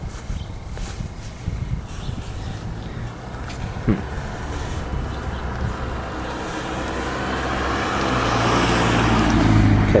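A motor vehicle's engine running with a steady low hum, growing louder over the last few seconds, with one short sharp sound about four seconds in.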